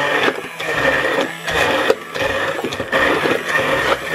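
Philips stick blender running in a plastic beaker, puréeing strawberries, blueberries and banana into a smoothie: a steady motor whine over the churning of the fruit, dipping briefly a few times.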